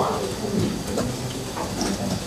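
A few light laptop keyboard keystrokes, scattered clicks over a steady room hum.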